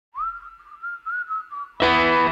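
Opening of a rock song: a lone whistled melody line that slides up into its first note and wavers through a few short phrases. Just before the end, the full band comes in with distorted electric guitar.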